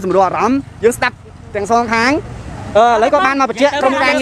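Speech: people talking in an on-street interview, with a low rumble of road traffic or a vehicle engine underneath.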